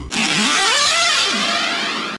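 Transformation sound effect for the Mango armor part appearing: a loud, noisy whoosh with swooping pitch glides.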